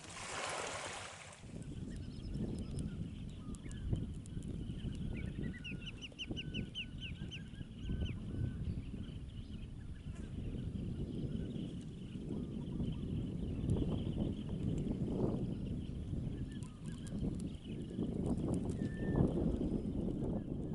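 Wind on the microphone, a low rumble with a brief hiss at the start. Over it, a bird gives a quick run of about eight short rising notes about five seconds in, with fainter chirps later.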